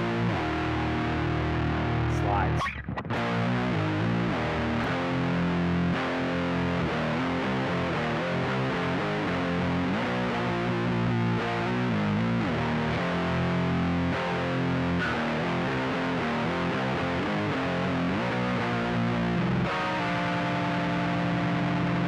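Distorted electric guitar in C standard tuning playing a heavy, slow riff of chords and single notes, with slides and heavy vibrato. The playing stops briefly a little under 3 s in, and a chord is held ringing near the end.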